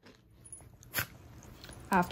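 Near quiet, broken by one short, sharp noise from a Havanese dog about a second in, with a fainter click just before it.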